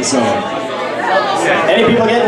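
Bar crowd chattering, several voices talking over one another, with no music playing.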